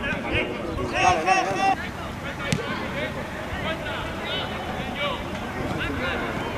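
Players and spectators shouting and calling out around a football pitch, the voices loudest about a second in, with one sharp knock of a football being kicked about two and a half seconds in.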